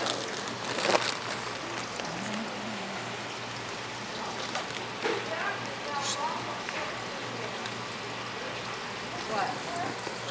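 Plastic fish-shipping bags rustling as they are handled and cut open. Underneath is a steady hum and a hiss like running water.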